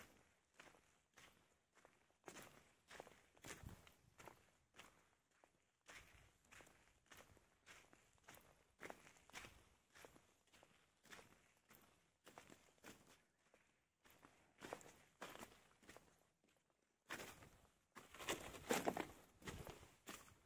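Faint footsteps on loose volcanic gravel and sand at a steady walking pace, about two steps a second, somewhat louder near the end.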